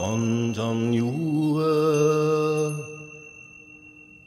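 Slow, chant-like meditation music: a sung voice holds long, wavering notes over a steady high tone. The phrase fades away about three seconds in.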